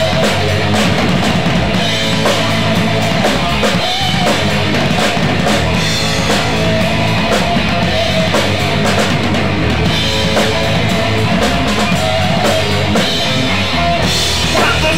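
A rock band playing loud and steady without vocals: a close drum kit with constant cymbal and drum hits, over electric guitar and bass guitar.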